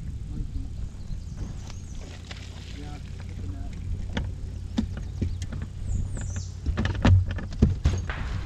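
Knocks and thumps of people moving about in a small fishing boat, over a steady low hum; the two loudest thumps come about seven seconds in.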